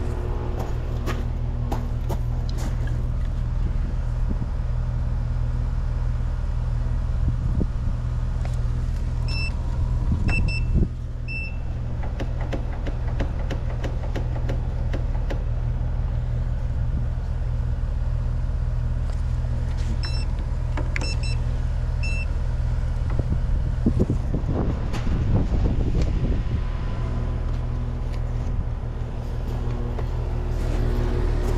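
Air-conditioning condenser unit running with a steady low hum, over clicks and knocks of tools and refrigerant hoses being handled at the unit's service valves. Short electronic beeps come in two quick clusters, about ten and twenty seconds in.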